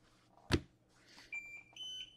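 A sharp click, then two short electronic beeps near the end, the second higher in pitch than the first.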